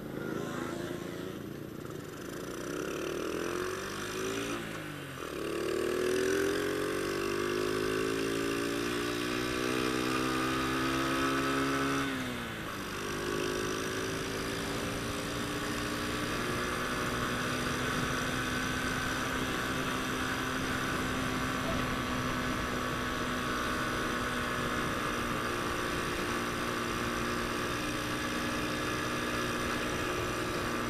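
Honda Astrea Grand's small single-cylinder four-stroke engine accelerating hard, its pitch climbing then dropping at a gear change about five seconds in and again about twelve seconds in, then held at a steady high pitch in third gear at speed. Wind noise rushes over the microphone.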